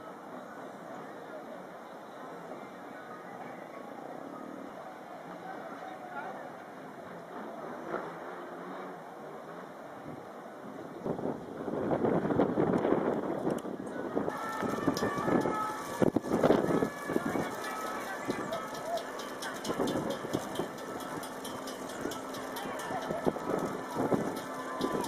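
Outdoor ambience, faint and even at first; about eleven seconds in it grows louder, with indistinct voices close to the microphone and many sharp crackling clicks.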